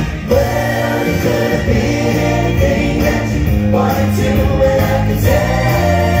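Live Motown-style music: a group of voices singing together over steady accompaniment with a bass line.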